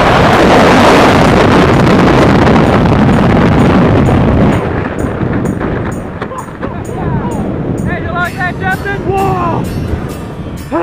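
Loud wind rushing over the microphone in skydiving freefall. It drops off sharply about halfway through, typical of the parachute opening, and is followed by quieter air noise and voices near the end.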